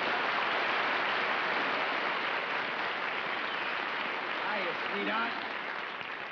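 Studio audience applauding steadily, easing off near the end, with a few voices heard in the crowd about five seconds in.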